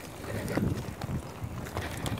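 Wind buffeting the microphone of a mountain biker's camera while riding a rough dirt trail, with irregular low rumbles and a few knocks from the bike and tyres going over the ground.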